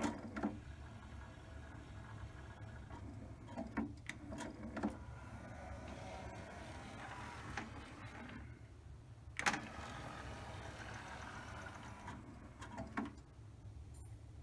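NAD 523 five-disc CD changer's drawer motor running the disc tray out and then back in, with clicks of the mechanism as each movement starts and stops; the tray runs on a freshly replaced drive belt.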